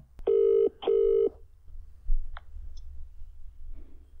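Australian telephone ringback tone through a phone's speaker: one double ring, two short buzzing tones in quick succession, as the called number rings out.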